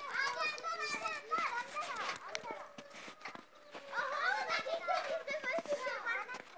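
Hens and a rooster clucking and chattering, several birds calling over one another. The calls come in two busy spells with a short lull in between.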